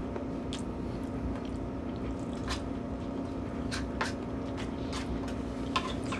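Someone eating from a plate: a few light clicks of a metal fork against the plate and quiet chewing, over a steady low hum.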